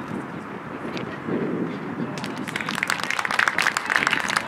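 Open-air outdoor noise with faint distant shouts, then spectators clapping from about halfway through, a small crowd's scattered applause.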